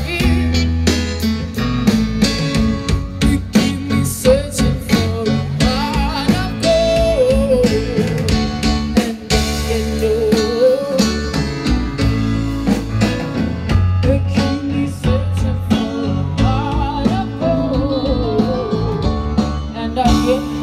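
Live band playing a song: a woman sings lead over electric guitar, bass, keyboard and drum kit.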